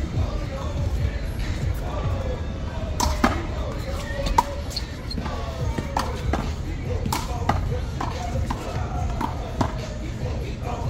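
A big blue handball being struck by hand and rebounding off the wall and the concrete court during a one-wall handball rally: sharp smacks at irregular intervals from about three seconds in, over background voices and music.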